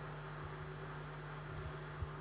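Faint room tone: a low steady hum under a light, even hiss, with no distinct events.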